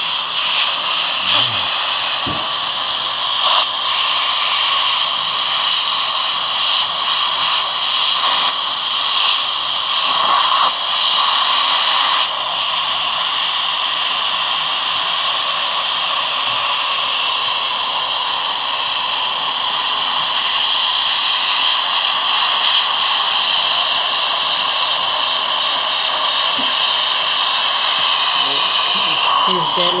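Dental suction hissing steadily as the saliva ejector draws air and saliva from the patient's mouth.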